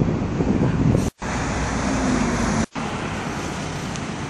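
Street traffic noise, a steady rushing hum of vehicles, louder and heavier in the low end during the first second. It breaks off in two short silent gaps, about a second in and again just before three seconds, where short clips are joined.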